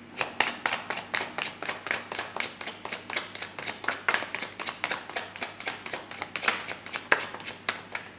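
Tarot deck being shuffled by hand: a rapid, even run of card slaps and riffles, about five a second, stopping near the end.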